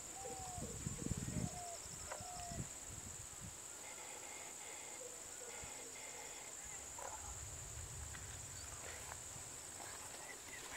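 Faint outdoor evening ambience: a steady high-pitched insect drone, with a few short whistled bird calls in the first couple of seconds over low rustling. No clear elephant call stands out.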